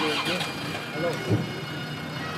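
A Range Rover hearse's engine running as it pulls away slowly, with indistinct voices nearby and a short low thump about a second and a half in.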